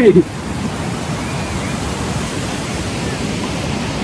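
Steady rush of white water tumbling over a rocky waterfall cascade.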